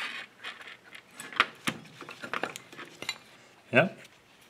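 Scattered light metallic clicks and clinks as the thin cast rear end cover of a small 9-watt fan motor is worked loose by hand and lifted off.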